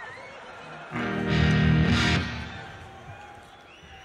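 A distorted electric guitar is struck once about a second in and left ringing, fading away over the next two seconds.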